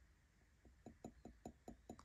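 Fingernails tapping faintly on a porcelain coffee cup: a run of about seven quick taps, about five a second, starting a little past halfway in.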